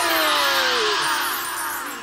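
Magic sparkle sound effect: a shimmering, twinkling wash with a long falling glide in pitch, fading away over the last second.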